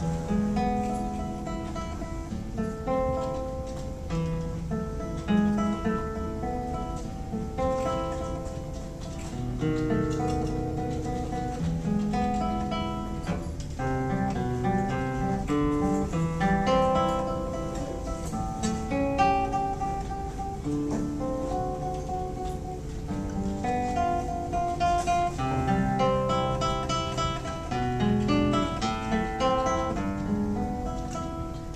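Solo nylon-string classical guitar played fingerstyle: a continuous stream of plucked notes, bass notes moving under a higher melody.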